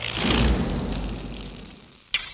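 A whoosh sound effect with a deep low end, loudest about half a second in and then fading away.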